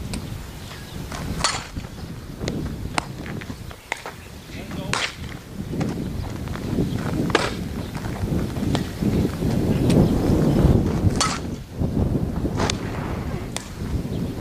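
Softball fielding practice: a string of sharp cracks and pops from the ball being hit and caught in gloves, about eight in all, unevenly spaced, over a low rumble that swells in the middle.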